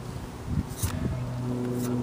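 A steady low mechanical hum, with two soft low bumps about half a second and a second in.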